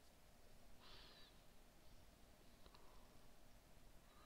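Near silence: faint room tone, with one faint short high sound about a second in and a faint click near three seconds.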